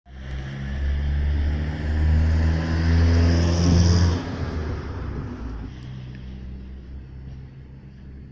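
A motor vehicle driving past close by: engine hum and tyre hiss build to their loudest about four seconds in, then drop away suddenly and fade.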